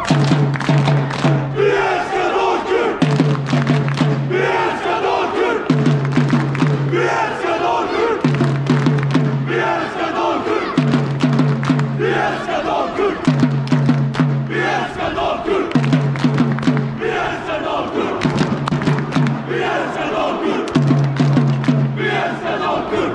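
Football supporters chanting together in unison, a short phrase repeated about every two and a half seconds, kept in time by sharp beats on a marching drum.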